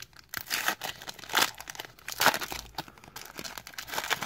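A foil trading-card pack being torn open by hand: the wrapper crinkles and rips in several short tearing bursts.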